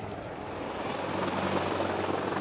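Large military helicopter's rotors and engines running, a steady noisy wash that grows slowly louder.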